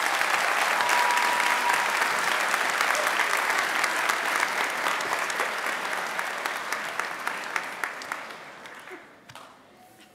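Large crowd applauding, starting at once and dying away near the end.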